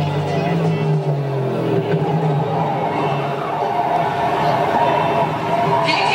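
Soundtrack of an old car-racing film playing over a concert PA: a car engine running steadily, then its note dropping away about two seconds in, with voices from the film over it.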